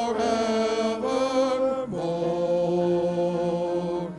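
Male vocal quartet singing a sacred song in harmony into microphones. The voices move between notes at first, then hold one long chord over the second half.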